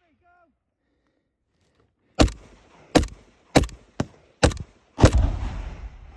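Six close rifle shots fired singly at an uneven pace, roughly half a second to a second apart, the last one followed by a longer rolling rumble.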